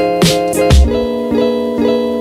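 Background music led by plucked guitar, with a heavy beat in the first half that drops out about halfway, leaving ringing guitar notes.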